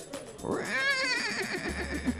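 A horse whinnying: one long call that rises, quavers rapidly in pitch, and trails off near the end.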